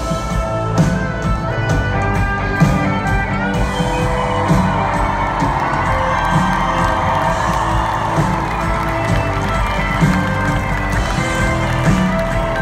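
Live band music played loud over a concert hall PA, heard from inside the crowd: sustained chords over a steady drum beat, with no vocal line.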